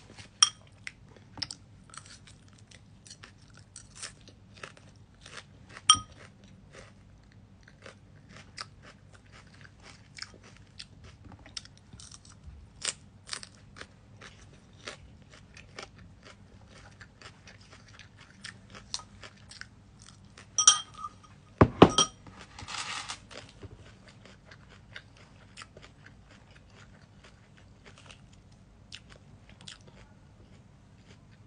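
Close-up crunchy chewing of lettuce salad, many small crisp bites, with a metal fork now and then clinking against the bowl with a short ring. The loudest moment, about two-thirds of the way in, is a pair of ringing clinks with a low thump and a brief rustle.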